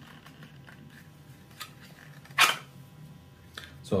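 Quiet handling of a knife in a Kydex sheath, with a few faint clicks and one short, sharp rasp about halfway through.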